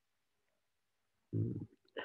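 Silence, then about a second and a half in a short, low, closed-mouth hum of a man's voice, like a hesitant "mm".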